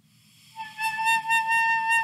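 A clarinet mouthpiece with reed and ligature, played on its own without the barrel or body, sounds one steady, high-pitched tone. The tone starts about half a second in and is held. This is a beginner's first sound on the mouthpiece.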